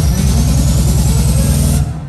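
Electronic dance music played loud over a club sound system: a build-up with a rapidly pulsing bass that climbs in pitch under a high whistling riser sweeping upward. It cuts off suddenly near the end into a break.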